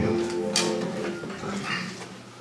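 Guitar notes held and slowly fading, with one sharp click about half a second in, just before the band starts the next song.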